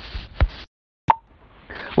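Audio dropout in the transmission: a sharp pop, about half a second of dead silence, then a click as the sound returns, with faint hiss building before speech comes back. The connection is cutting out.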